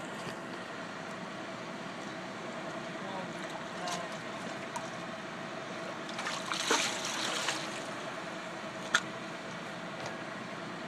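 Water moving and lapping, with a brief swirl and splash a little past halfway as a large tarpon feeds at the surface, over a steady background hum. A single sharp click near the end.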